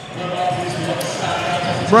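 Basketball being dribbled on a wooden court, with a sharp bounce about a second in, over the steady murmur of a crowd in a sports hall.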